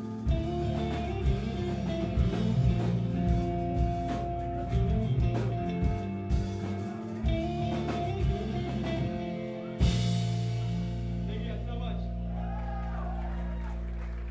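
Live pop-punk band playing: electric guitars, bass and drum kit. About ten seconds in the band hits a final accent and the chord is left ringing out.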